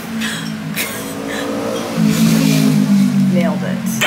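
A motor vehicle engine running with a steady low drone that grows louder about halfway through and shifts in pitch near the end, with a woman's breathy laughter early on.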